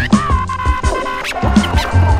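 Instrumental hip hop beat cut with turntable scratching: repeated low kick-drum hits under sustained, sliding pitched sample lines, with short sharp scratch strokes over the top.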